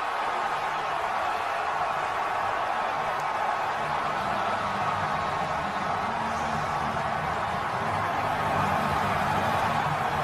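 Large stadium crowd cheering a touchdown, a steady, even wash of noise with no breaks.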